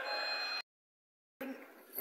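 A brief steady high whine with several pitches at once, cut off abruptly about half a second in, followed by dead silence and then faint room noise.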